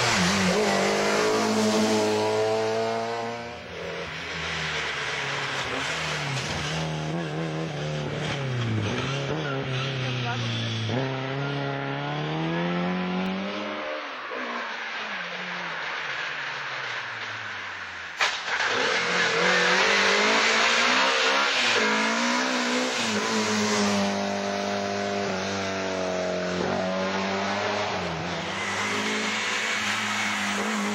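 Fiat 131 Abarth rally car at full stage pace, its engine revving hard, the pitch climbing and dropping repeatedly with the gear changes through the corners. About 18 seconds in, a sudden cut brings a louder pass with more road and tyre noise under the engine.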